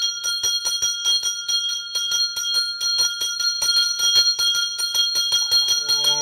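A brass temple hand bell (ghanta) rung continuously during the puja. The clapper strikes about six times a second, keeping up a steady, high, metallic ringing.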